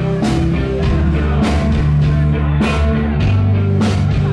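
Rock band playing live, sustained guitar and bass chords with a drum or cymbal hit about every second, without singing.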